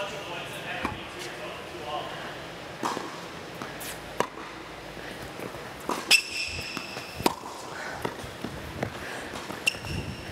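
Tennis rally on an indoor hard court: sharp racket strikes and ball bounces about every second or so, echoing in a large hall. A high shoe squeak on the court lasts about a second, starting about six seconds in.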